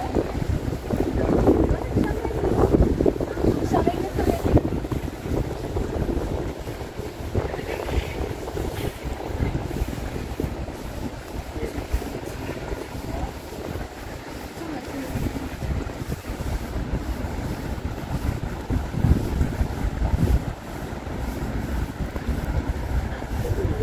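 Gusty wind rumbling on the microphone, rising and falling unevenly, with people talking nearby, loudest in the first few seconds.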